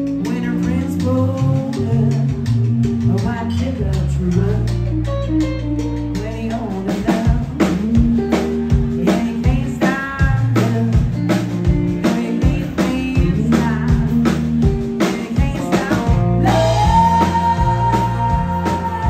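Live country band playing: guitars, bass and drum kit with a woman singing lead into a microphone. The drums keep a steady beat through the second half, and near the end she holds one long high note.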